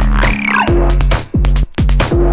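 Electronic dance track: a drum-machine beat with pitch-dropping kick drums over a deep sustained bass line, and a synth tone that sweeps up and back down about half a second in.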